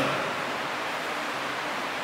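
Steady hiss of background room noise in a large church, with no distinct event.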